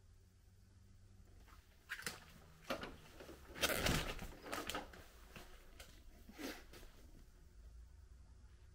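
A handful of footsteps and scuffs on a hard floor, short sharp sounds from about two seconds in to six and a half, the loudest cluster near four seconds, over a faint low rumble.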